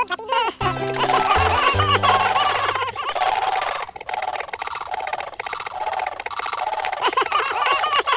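Cheerful cartoon background music with low bass notes in the first few seconds, and short squeaky, chirping character voices over it.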